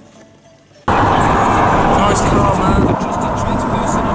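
Quiet for about a second, then loud audio from inside a moving car cuts in abruptly: road and engine noise mixed with music and voices.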